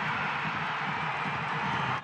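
Stadium crowd cheering just after a goal, a steady wash of noise with no single voice standing out.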